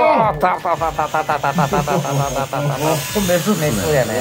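A man's excited vocal exclamation, a fast pulsing 'ooo-o-o-o' at about seven beats a second for a couple of seconds, followed by a few more voiced sounds.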